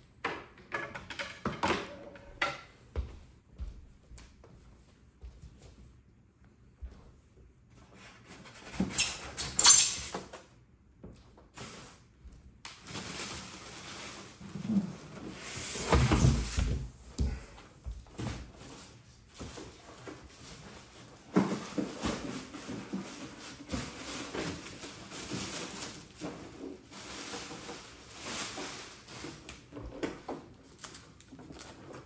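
A cardboard shipping box and its foam packing being handled as a monitor is unpacked: scattered knocks and scrapes, a sharp loud clatter about ten seconds in, then a long stretch of rubbing and scraping of foam against cardboard as the contents are pulled out.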